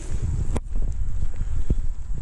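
A hiker's footsteps on a dirt trail strewn with dry leaves, under a low rumble of wind and handling on the camera's microphone, with a sharp click about half a second in.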